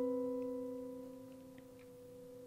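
Piano sounding a held major-seventh interval, middle C and the B above it, slowly dying away. This is the dissonant interval inside the diminished major seventh chord.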